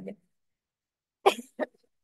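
A woman coughs twice: a sharp cough a little past a second in, then a smaller one just after.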